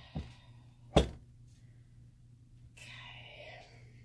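A bar-length log of cold process soap is turned onto its side and set down on a wooden wire soap cutter: a soft knock just after the start, then one sharp thunk about a second in.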